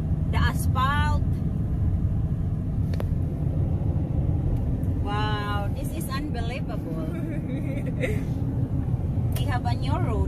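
Steady low road and engine rumble inside the cabin of a moving truck, with short bursts of voices over it three times.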